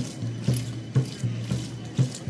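Accompaniment to a Naga warrior dance: sharp rhythmic strokes about twice a second over a low steady drone.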